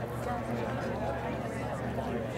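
Indistinct chatter of several spectators talking at once, steady with no single voice standing out.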